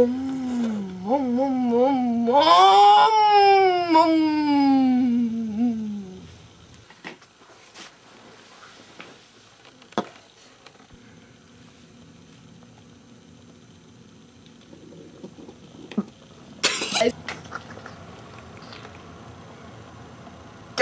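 A voice imitating a car engine, wavering up and down in pitch like revving for a few seconds and then sliding down in one long falling glide. After that comes low room tone with a couple of clicks and one short, loud vocal sound near the end.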